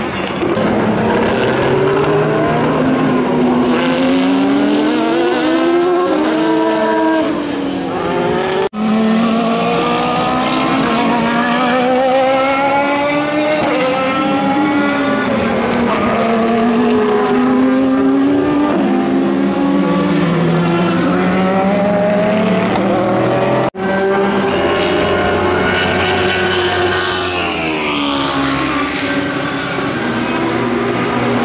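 Toyota TS030 Hybrid LMP1 prototype's 3.4-litre V8 racing engine at full speed, its pitch climbing and falling again and again as the car accelerates and slows. The sound breaks off abruptly twice where separate passes are joined.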